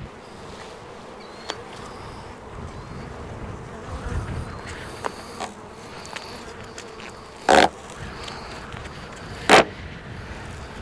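Honeybees buzzing around open hive boxes, a steady hum with a few small clicks, broken near the end by two short, loud rasping noises about two seconds apart.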